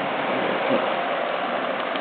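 Steady hiss of background noise with no distinct sound event.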